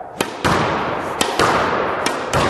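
Squash ball being volleyed on court: sharp cracks of racket strikes and the ball hitting the walls, in two quick pairs about a second apart, each ringing in the court's echo.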